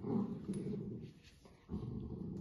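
Golden retriever puppies growling as they play-fight over a toy, in two bouts with a short lull between them.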